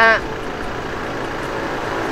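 Steady road-traffic noise from motor vehicles on the road alongside, slowly growing louder toward the end as a vehicle comes closer.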